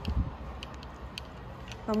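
Footsteps on a hard tiled floor at a walking pace, about two a second, over a low steady rumble, with a soft low thump just after the start.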